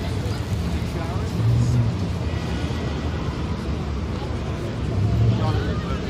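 Busy city street ambience: a steady low traffic rumble with snatches of passers-by talking, and the rumble swelling briefly about a second and a half in and again near the end.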